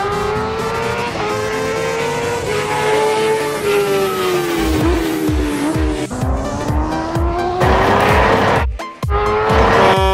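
Small motorbike engines revving with a wavering, rising and falling whine, laid over background music whose low beat comes in about halfway through. Near the end comes a burst of tyre-skid hiss, a short drop-out, then a steady horn starting.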